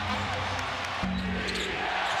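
Basketball arena ambience: crowd noise with music playing over it. About a second in, the sound changes abruptly and a low, steady held tone comes in.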